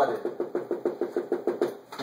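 Dry-erase marker tip tapping rapidly on a whiteboard, dotting in a cluster of small dots: an even run of light taps, about ten a second, stopping just before the end.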